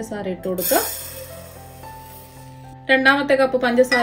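Narration over soft background music. In a pause about a second in, there is a brief high hiss of granulated sugar pouring from a steel measuring cup into a steel pot.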